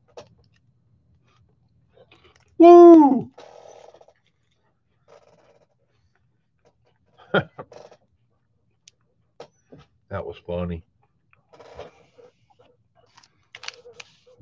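A man's voice making one loud drawn-out vocal sound that rises and falls in pitch about three seconds in, then a few brief murmured sounds later on.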